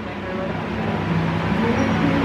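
Restaurant background: a steady low hum with faint, indistinct voices.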